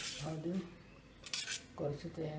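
Stainless steel kitchenware clinking: a spoon and steel pans and bowls knocking together, with sharp clinks at the start and again about halfway through.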